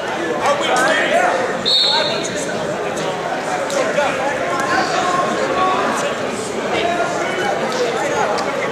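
Indistinct chatter of several people talking at once in a large gymnasium, with a brief high-pitched steady tone about two seconds in.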